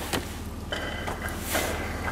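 Hands working on parts under a car's propped-open hood: a light click just after the start and a short rustling scrape about one and a half seconds in, over a steady low rumble.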